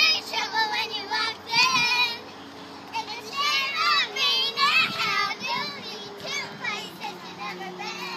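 Young girls singing and squealing in high, wavering voices. They come in stretches, loudest in the first two seconds and again around the middle, and trail off near the end.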